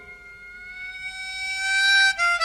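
Chromatic harmonica holding one long note that bends slightly upward in pitch and swells from soft to loud, the band nearly silent beneath it.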